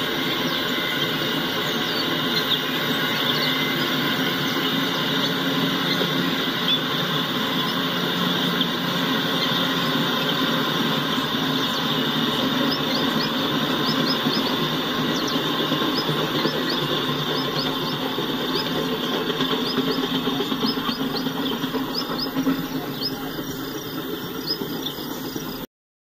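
Amtrak passenger cars rolling past at speed: a steady rumble and clatter of wheels on the rails, easing a little near the end as the last car goes by.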